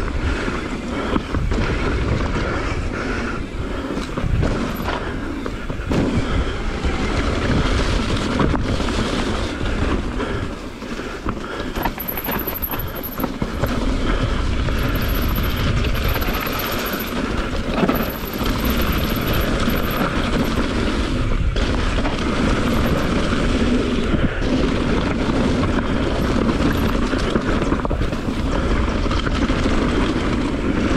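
Mountain bike ridden fast downhill on a dirt and rock trail: a steady rumble of tyres over the ground with continual rattling and knocks from the bike.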